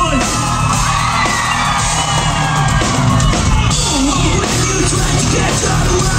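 Live hard rock band playing loud, with electric guitars, bass and drums, and the lead singer yelling and singing over them.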